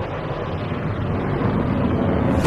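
A steady low rumbling, rushing noise with no distinct hits or changes.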